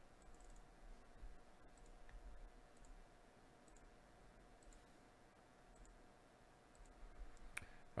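Faint computer mouse clicks, roughly one a second, with a slightly sharper click near the end, over quiet room tone: the randomizer button being clicked again and again.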